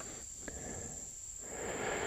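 Steady, high-pitched insect buzz from the woods, with a soft rush of noise swelling near the end.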